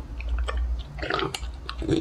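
French bulldog biting and chewing a dog treat: irregular crunchy clicks and wet mouth sounds.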